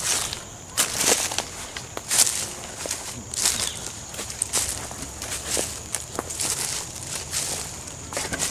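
Footsteps walking through dry leaf litter and undergrowth on a forest floor: irregular crunching and rustling steps at a walking pace.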